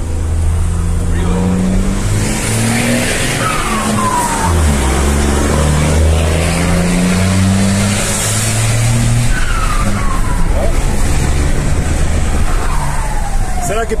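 Mercedes-Benz 1620 truck's six-cylinder turbodiesel pulling hard, heard from inside the cab. Its turbocharger whistles from a comb ('pente') fitted in the turbo to make it sing. Three times the whistle drops in pitch as the revs fall between gears.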